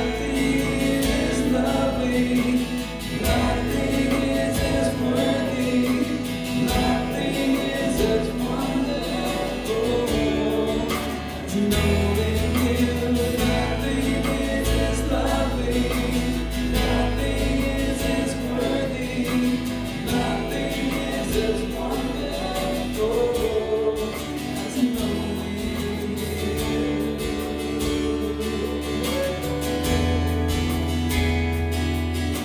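Live worship band playing a slow song, with several voices singing together over acoustic and electric guitars, keyboard and sustained low bass notes.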